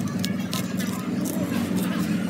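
A cleaver shaving strips off a raw bamboo shoot against a wooden chopping board: several short, crisp cuts. Under them runs a steady low hum.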